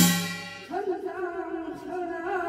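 The ringing accompaniment of a Korean shaman's gut, drum and metal percussion, sounds a last stroke and dies away. About 0.7 s in, a shaman's ritual chant (사설) begins on a long, wavering sung note.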